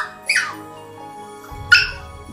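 A spaniel puppy giving three short, high whimpering cries, each falling in pitch. The last one, near the end, is the loudest. Background music runs under them.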